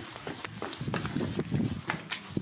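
Quick, irregular knocks and rustling of a handheld phone being jostled while its holder moves in a hurry in the dark, with hurried footsteps.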